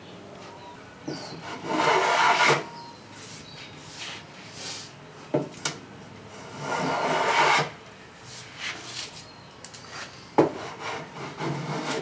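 Small hand tool scraped along the edge of the wood trim, trimming it: two long, loud rasping strokes about two and seven seconds in, with weaker strokes between. A couple of sharp knocks as the tool touches down on the wood.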